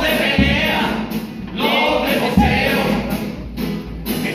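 A chirigota chorus of men singing a cuplé together, accompanied by Spanish guitars and a bass drum beaten about every two seconds.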